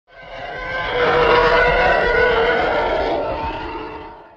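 Channel-intro sound effect under the logo: a sustained, many-toned roar that swells up over about a second, holds, and fades away near the end.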